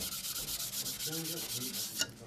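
Coarse diamond sharpening plate rubbed back and forth against a Norton 8000-grit waterstone, wet, a steady gritty scraping: lapping the waterstone flat.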